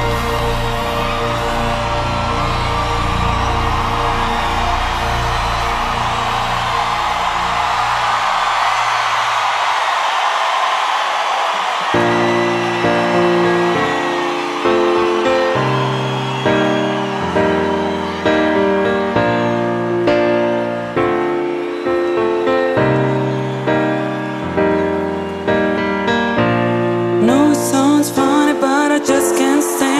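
Live pop concert music: a sustained keyboard pad with bass fades out. Slow piano chords then begin, each struck and left to decay. Near the end the crowd cheers and whoops.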